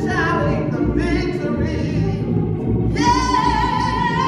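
A woman singing a gospel solo into a microphone. About three seconds in she holds a long, strong note with vibrato.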